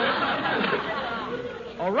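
Live studio audience laughing, the crowd's laughter dying away over about a second and a half before a man's voice comes in near the end.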